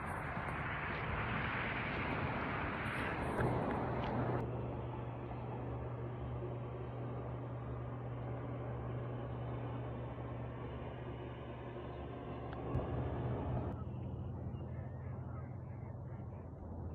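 A loud rushing noise for the first four seconds, then a steady low engine hum of a boat motor running at an even speed, with wind and water noise, for most of the rest.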